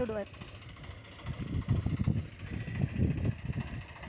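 Tractor engine running out in the field as it harvests sorghum, with low, uneven rumbling swelling up in the middle for about two seconds.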